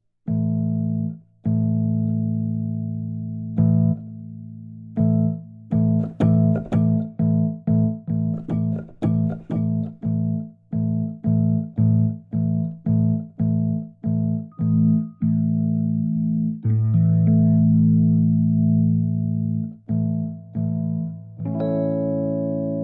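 Sonuscore RO•KI sampled electric piano playing low fifths and chords: a few held chords, then a run of short repeated chords about two a second, a long held chord, and higher chords near the end.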